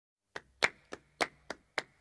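Six sharp percussive knocks in an even rhythm, about three and a half a second, alternating softer and louder. They lead straight into the start of a song, like a count-in.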